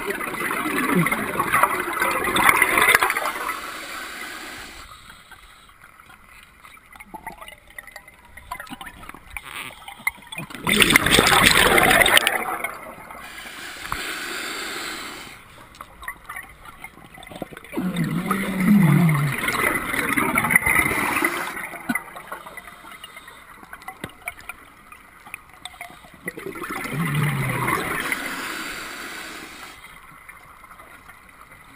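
Scuba diver breathing out through an open-circuit regulator: four rushes of exhaled bubbles, each two to three seconds long and about eight seconds apart, with quieter stretches between. Two of the rushes carry a low falling hum.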